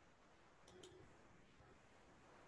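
Near silence: room tone, with two faint quick clicks close together a little under a second in, from a computer mouse button being pressed.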